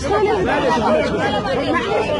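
Several people talking over one another at close range: loud, overlapping chatter with no pause.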